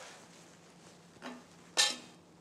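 Quiet room with a faint steady hum; a faint knock a little past the middle, then a single sharp clink near the end as the filterability-test equipment is handled.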